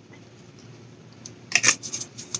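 A small plastic drink bottle handled and set down: a quick cluster of sharp clicks and knocks about one and a half seconds in, after quiet room tone.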